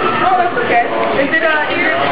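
Indistinct talking of several voices at once, overlapping in a small room.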